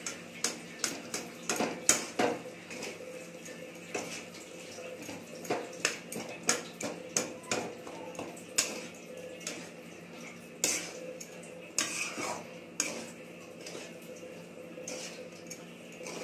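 A metal spatula scraping and knocking against a steel kadhai as rice is stirred and fried in it. Irregular clinks come in clusters, sometimes several a second, with short pauses between.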